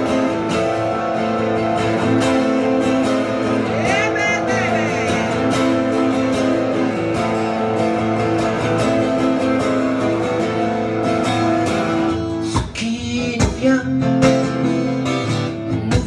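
An acoustic guitar strummed steadily in full chords. In the last few seconds the strumming becomes choppier and more percussive.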